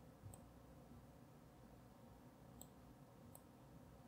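Near silence with a few faint, sharp clicks of a computer mouse button as an on-screen image is dragged and resized.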